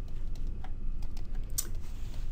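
Light, irregular clicks and taps of a stylus on a pen tablet while handwriting, over a faint steady low hum.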